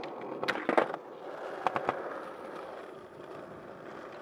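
Skateboard wheels rolling on asphalt, with a few sharp knocks from the board striking the ground: a cluster about half a second in, the loudest of them near the one-second mark, and two more a little before two seconds.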